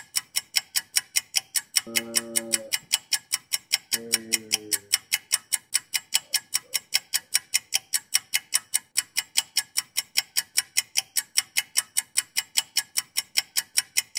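A clock ticking fast and evenly, about four ticks a second, laid in as a sound effect for hours passing. Two short pitched tones sound about two and four seconds in.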